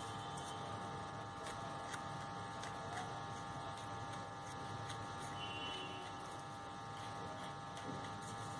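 A faint, steady electrical buzz and hum, unchanging throughout, with a few very light ticks.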